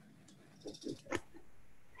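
Faint handling noise from a handheld microphone being passed from one person to another: a few soft knocks and rubs about a second in, the last the loudest.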